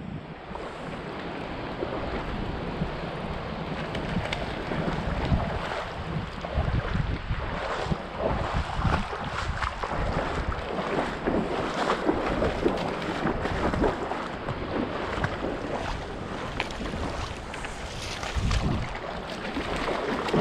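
Steady rush of river water, with gusts of wind rumbling on the microphone now and then and small splashy ticks throughout.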